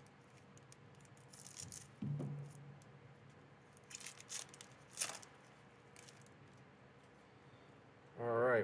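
Foil Magic: The Gathering booster pack wrapper being crinkled and torn open: faint scattered rustles, with sharper crinkles about four and five seconds in. A brief low hum about two seconds in.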